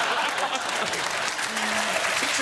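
Studio audience applauding and laughing.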